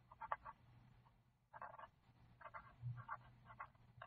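Faint handwriting on paper: short scratchy strokes of a writing tool coming in quick clusters as words are written, over a low steady hum. There is a soft low bump a little before three seconds in.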